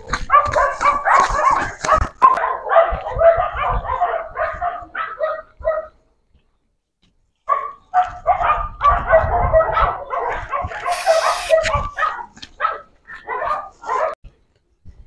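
A dog barking, yipping and whining in quick repeated calls, with a break of about a second and a half in the middle and a short hiss about eleven seconds in.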